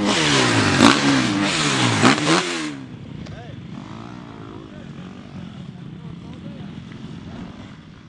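Motocross bike engine revving, its pitch dropping and climbing again several times, then falling away to a much quieter level about three seconds in.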